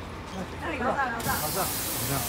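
A sudden, steady hiss of compressed air from a parked tour coach's air system starts a little past halfway and keeps going, over the low hum of the coach's idling engine.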